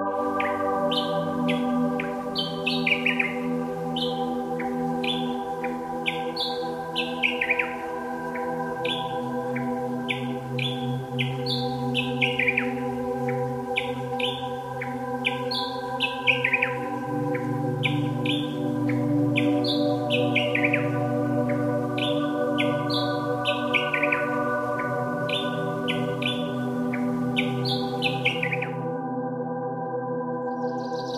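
Ambient background music of sustained drone chords, with birdsong chirps layered over it, short falling calls repeating about once or twice a second. The chords shift a couple of times, and the music and chirps cut out together near the end.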